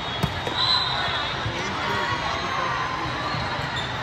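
Volleyball serve: a hand strikes the ball with one sharp slap about a quarter second in, followed by fainter ball contacts, over the steady din of voices in a large hall.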